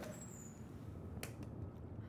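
Quiet room tone with a faint low rumble, broken by a single short click about a second in.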